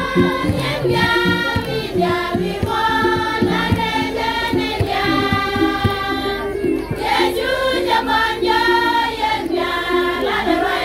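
A women's choir singing a gospel song in Nuer over instrumental accompaniment with a steady beat.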